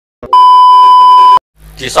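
A loud, steady, single-pitched test-tone bleep, the tone that goes with TV colour bars, lasting about a second and cutting off sharply.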